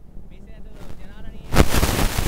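Faint voices, then about one and a half seconds in a sudden loud burst of dense crackling noise that keeps going.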